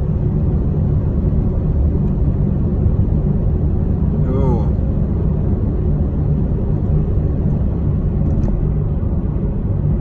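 Road and engine rumble inside a car cabin while driving: a steady, loud, low noise, with a brief vocal sound about four seconds in.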